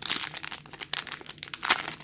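Foil wrapper of a Magic: The Gathering booster pack crinkling and crackling as it is torn open by hand, in quick irregular crackles.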